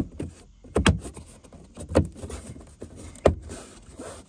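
Plastic rear-deck speaker grille being handled and pressed down into the parcel shelf, with three sharp clicks as its tabs snap in, the last the loudest.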